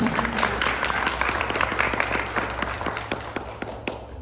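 Applause from the audience and panel: a dense patter of many hands clapping, dying away toward the end.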